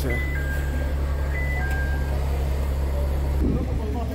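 Steady low rumble of an idling engine, with a few brief high tones in the first two seconds and a man's voice coming in near the end.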